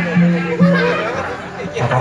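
Amplified live music with short, repeated low notes, mixed with voices and audience chatter.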